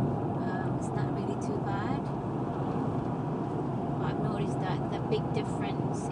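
Steady road and engine noise inside a moving car at road speed, with a woman's voice talking over it in snatches.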